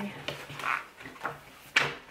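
A spiral notebook being handled and opened on a wooden table, with paper rustling as the pages are turned and one sharp knock against the table near the end.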